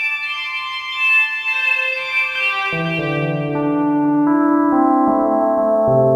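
Electronic synthesizer music played by a Sonic Pi program that mixes its own synths with voices from a Korg X5DR synth module: sustained keyboard-like notes, high ones at first, with a lower held chord coming in about three seconds in and the notes changing step by step about once a second.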